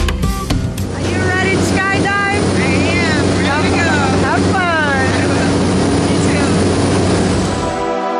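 Loud, steady drone of a light aircraft's engine and propeller heard inside the cabin, with voices calling and laughing over it. Music plays for about the first second and cuts back in right at the end.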